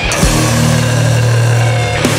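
Heavy hardcore punk music from a band recording. The full band hits a chord at the start and lets it ring as a held, low, heavy chord under a wash of cymbals.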